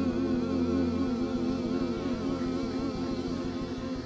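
Church keyboard organ holding a sustained chord with a steady wavering vibrato; the low note shifts about a second in.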